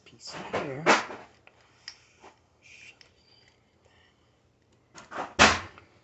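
Handling noise from a metal slinky coil and plastic toy parts being worked by hand at a table, with two sharp knocks: one about a second in and a louder one near the end. A short voice sound comes just before the first knock.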